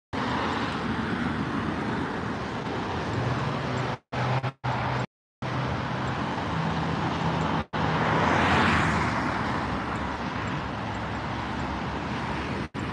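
Road traffic going by, with a vehicle passing loudest about eight to nine seconds in. The sound cuts out to silence several times for a moment, between about four and six seconds in and again just before the passing vehicle.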